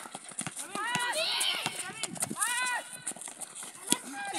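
Children shouting and calling out during a basketball game, over repeated sharp knocks of a basketball bouncing on a concrete court.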